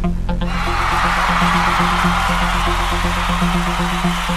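Electronic intro music: a repeating bass pulse with short plucked notes that stop about half a second in, giving way to a swelling wash of hiss over the pulse.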